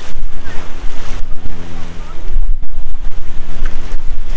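Shallow sea surf washing in and out at the water's edge, with heavy wind buffeting on the microphone. A steady low engine drone runs underneath.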